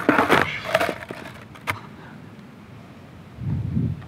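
Skateboard clattering onto asphalt during a kickflip attempt: loud deck-and-wheel impacts right at the start, then a single sharp clack a little later. Near the end the wheels rumble low as the board rolls over the asphalt.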